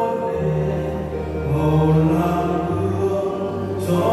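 Slow church hymn sung in a chant-like style over held low accompanying notes that change pitch every second or so.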